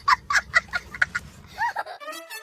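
A fowl's rapid call: a quick run of short clucking notes, about five a second, ending in one longer note that rises and falls near the end.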